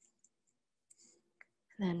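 Near silence broken by a few faint small clicks, then a voice starts speaking near the end.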